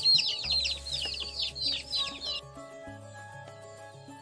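Chickens peeping in quick, high, falling chirps over background music; the chirps stop a little over two seconds in and the music goes on alone.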